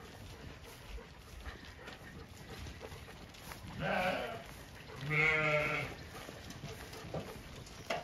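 Zwartbles ewes bleating twice: a short call about four seconds in, then a longer, quavering one lasting about a second just after five seconds.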